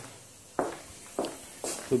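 Footsteps on a workshop floor, a few short steps about half a second apart.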